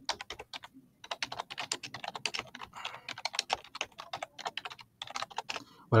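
Typing on a computer keyboard: a quick run of keystrokes entering a short sentence, with brief pauses about a second in and again near the end.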